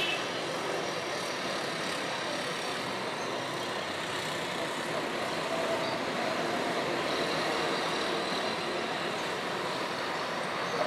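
Steady hum of distant city road traffic: engines and tyres blending into an even background with no single vehicle standing out.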